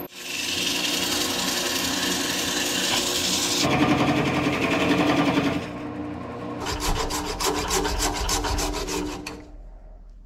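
Wood lathe running with a steady motor hum while a tool rasps against the spinning red cedar, a loud dense hiss at first. In the last few seconds the rasping comes in quick regular strokes before it fades.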